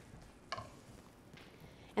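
Faint soft scraping of a silicone spatula spreading warm frosting across a metal sheet pan, with one small click about a quarter of the way in.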